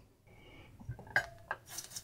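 A few light clicks and clinks of small tools being handled on a workbench, starting about a second in.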